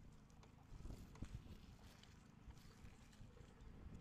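Near silence with faint, low chewing sounds from a mouthful of smoked turkey tips, mostly about a second in.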